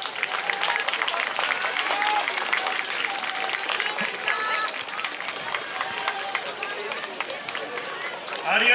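Audience applauding at the end of a dance performance, a steady patter of many hands clapping, with a few voices calling out over it.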